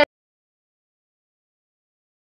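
Complete silence: the sound track cuts off abruptly at the start and nothing is heard, not even room tone.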